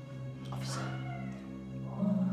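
A single drawn-out, wavering cry begins about half a second in and lasts roughly a second, over steady low background music.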